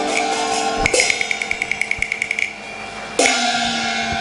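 Cantonese opera band ending a piece with a percussion flourish. A rapid roll of sharp clacks, about ten a second, is followed about three seconds in by a single gong strike that dips in pitch and rings on, marking the end of the song.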